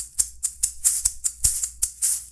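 A pair of natural gourd maracas made by luthier Lorenzo Alvarado, the ones used for studio recording, shaken in a quick, even rhythm of about five crisp shakes a second.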